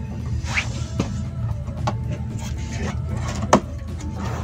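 Cardboard shipping box being opened by hand, its flaps lifted and handled, with a few sharp knocks and taps, the loudest about three and a half seconds in.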